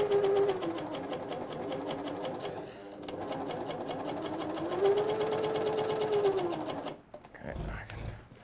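Britannia CS4000+ coverstitch machine stitching bias binding through its binder attachment: a fast run of needle strokes over the motor's whine, which rises and falls as the machine speeds up and slows. It pauses briefly about three seconds in, runs again, and stops near the end.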